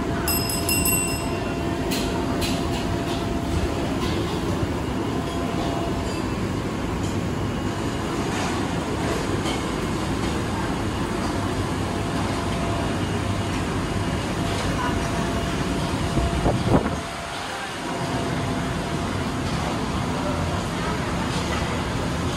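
Steady, low rumbling background noise of a busy food centre, with people's voices faintly in it. A sharp knock comes about three-quarters of the way through, followed by a brief dip in the rumble.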